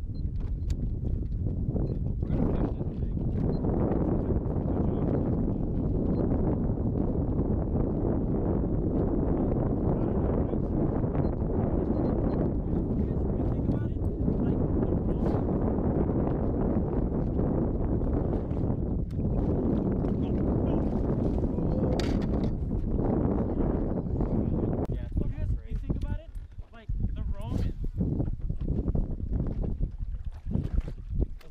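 Steady wind noise on the microphone over choppy water around a small fishing boat, with indistinct voices mixed in. The wind eases briefly near the end.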